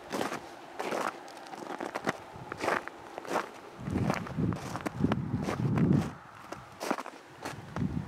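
Footsteps crunching in deep fresh snow: irregular crunches, about one or two a second. A low rumble runs under them from about four to six and a half seconds in.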